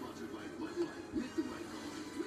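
Television playing in the room: muffled, indistinct voices with some music.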